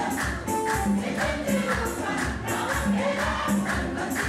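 A church congregation singing together, with hand-clapping and percussion keeping a steady beat of about three strokes a second.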